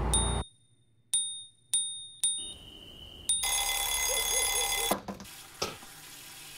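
Small bell dinging about five times in quick, uneven succession, then ringing on continuously for about a second and a half before cutting off sharply; two short knocks follow near the end.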